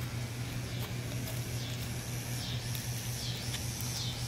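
Quiet outdoor background: a steady low hum with faint, repeated high chirps.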